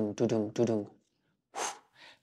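A man's voice making a quick run of short, evenly spaced voiced breaths, about three a second, that stops about a second in. A sharp breath follows near the end.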